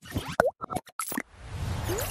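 Animated logo-outro sound effects: a quick run of pops and short bloops that glide in pitch, then a swelling whoosh that builds from a little after a second in.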